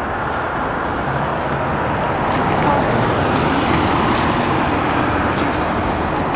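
A car driving along the street: steady engine and tyre noise that grows a little louder after about two seconds.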